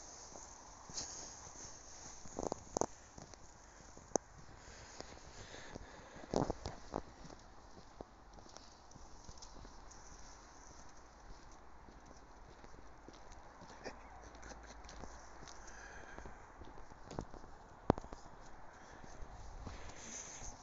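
Footsteps crunching in fresh snow, irregular, with a few louder thumps and clicks of the phone being handled.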